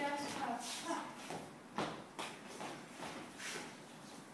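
Dancers' shoes stepping and sliding on a wooden floor during partnered swing dance footwork, with a few sharp steps about two seconds in.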